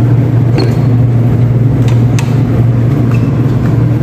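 Steady low machine hum from the kitchen equipment around a dough mixer and lit burner, with a few light clicks about half a second, two seconds and two and a quarter seconds in.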